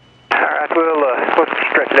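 Speech over an aviation radio: a voice on the air traffic control frequency, narrow and tinny, starting after a brief pause about a third of a second in.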